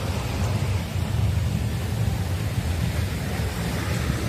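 Steady rushing seashore noise over a low, fluttering rumble, from wind and surf on the beach.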